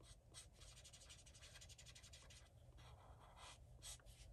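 Faint scratching of a colorless alcohol blender marker rubbed in quick short strokes over coloring-book paper, dissolving Inktense color. A rapid run of strokes for the first couple of seconds gives way to a few slower ones.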